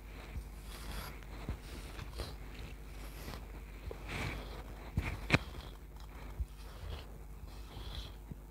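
Hair rustling as a wide-tooth comb and fingers work through loose curls close to a clip-on microphone, with scattered soft knocks. The sharpest knocks come about five seconds in.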